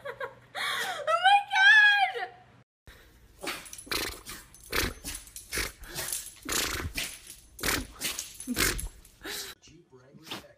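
A dog giving a wavering, whining howl that rises and then falls. A dog then makes about a dozen short, sharp bursts of sound, roughly one every half second.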